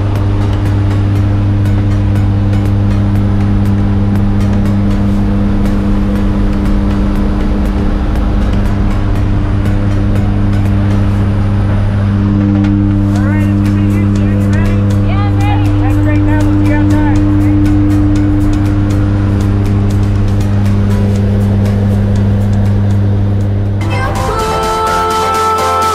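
Jump plane's propellers and engines heard from inside the cabin with the jump door open: a loud, steady low drone with a hum and overtones, its upper tone shifting about halfway through.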